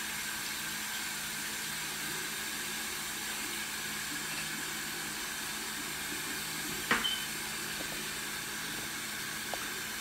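A steady rushing hiss, with a single sharp click about seven seconds in.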